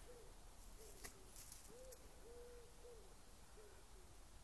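A dog whining softly in a string of short, low moans, each rising and falling in pitch, about two a second: the dog 'talking' when asked to speak.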